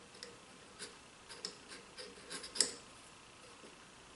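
Faint, scattered small clicks and taps of a metal square and a pencil being handled against a pine board while a line is marked, the loudest click a little past halfway.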